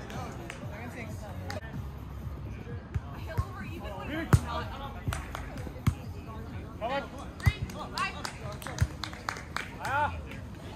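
Volleyball being struck several times during a rally: sharp hits from hands and forearms, the loudest about four seconds in, over music and players' voices.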